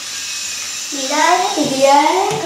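A child's voice talking, starting about halfway in after a soft hiss.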